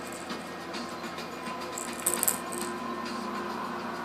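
A baby's clear plastic rattle with loose beads inside gives one brief, bright rattle about two seconds in, with faint scattered clicks from it before and after.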